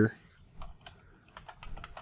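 Typing on a computer keyboard: a run of short keystrokes, scattered at first and coming faster in the second half.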